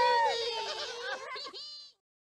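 Several high-pitched cartoonish character voices calling out and laughing together in a drawn-out, sing-song way, then cut off abruptly just before the end.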